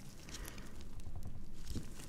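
Paper tissues crinkling and rustling under gloved fingers as they squeeze a silicone pimple-popping practice pad, in irregular soft crackles.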